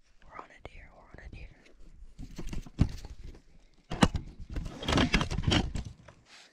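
Hushed whispering between hunters, broken by a few sharp clicks and rustles of handling.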